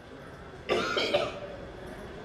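A person coughs once, briefly, a little under a second in; otherwise low room sound.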